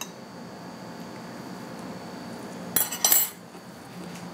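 A utensil clinking against a glass bowl: two quick clinks close together about three seconds in, over quiet room noise.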